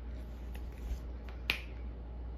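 A single sharp, snap-like click about one and a half seconds in, with a fainter low knock just before it, over a steady low hum.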